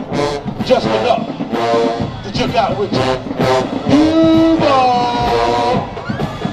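Marching band playing: brass over a steady drum beat, with a long held note that bends in pitch about four seconds in.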